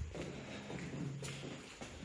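Faint footsteps and shuffling on a concrete floor.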